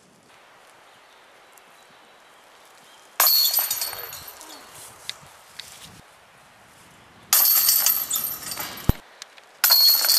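Discs striking the hanging steel chains of an Innova disc golf basket three times, about four seconds apart. Each hit is a sudden metallic jangle of chains that rings and dies away over about a second.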